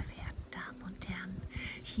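A woman's soft, half-whispered speech.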